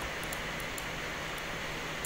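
Steady background hiss with a faint low hum and a few faint ticks: the room tone of a narration microphone between sentences.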